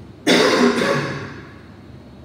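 A man coughs into his fist: one sudden loud, harsh burst about a quarter second in that dies away within a second.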